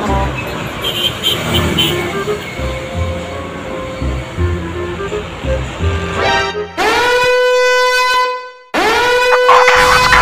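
Background music over passing road traffic, then two long, loud blasts of a truck air horn, about seven and nine seconds in, each sliding up in pitch as it starts.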